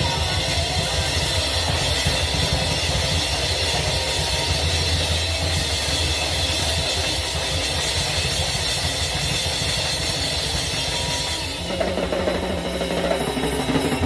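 Acoustic drum kit played with sticks along with a recorded rock song. The dense full-band sound thins about twelve seconds in, leaving the drums more to the fore.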